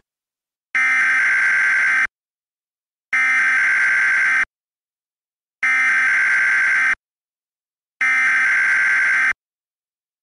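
Electronic alarm buzzer sounding four times, each a steady buzz of about a second and a half with an even pause of about a second between.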